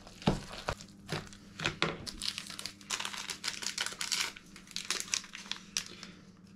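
A few knocks of a spoon against a plastic mixing bowl of cottage-cheese batter, then a small paper sachet of vanillin crinkling as it is handled and opened over the bowl.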